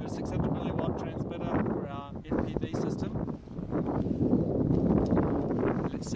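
Wind buffeting the microphone, with brief indistinct voice sounds, clearest about two seconds in.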